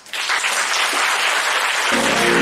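Audience applauding, starting suddenly just after the talk ends and holding steady.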